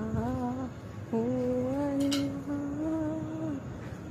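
A single voice chanting a slow devotional zikr of 'Allah' in long, hummed held notes. The notes break off briefly about a second in and again just before the end.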